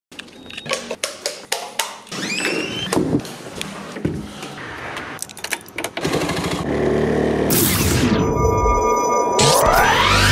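A montage of sharp clicks and knocks, then from about six seconds a motorcycle engine idling with a steady low tone. Near the end a broad whoosh sweeps down and back up.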